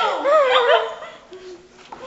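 A high, whining vocal sound with wavering, gliding pitch in the first second, tailing off into a brief low hum and fading.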